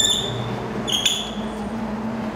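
Two short, high-pitched squeaks about a second apart from a glass entrance door being held open as it swings, over a low steady background of street traffic.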